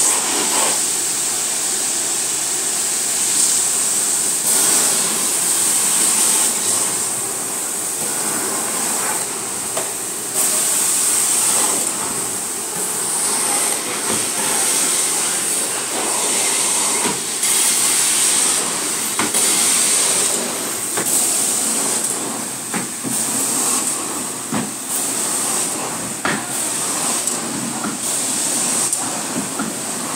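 Carpet-cleaning extraction wand on a vacuum hose pulled over wet carpet: a steady rushing hiss of suction with a high whine, swelling and easing with each stroke, with a few sharp clicks.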